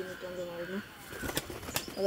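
Domestic pigeon flapping its wings as it is handled out of a wooden nest box, with two sharp claps a little under half a second apart past the middle.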